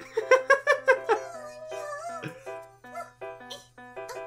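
Gentle cartoon soundtrack music with a run of separate sustained notes. Over it, a high voice gives a quick series of about five squeaky pulses in the first second, then one long wavering tone that falls away.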